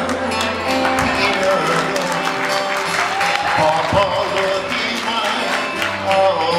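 Live Hawaiian slack-key acoustic guitars with a steel guitar playing a slow song, with sliding notes around the middle.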